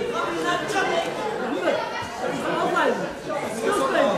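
Many people talking at once: overlapping chatter of spectators and corner teams, echoing in a large hall.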